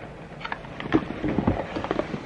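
A small cardboard advent-calendar box being handled and opened: a few light clicks and knocks of cardboard, the loudest about a second in.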